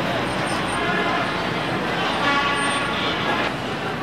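Busy city street ambience: steady traffic noise and the chatter of a crowd. A vehicle horn sounds about two seconds in.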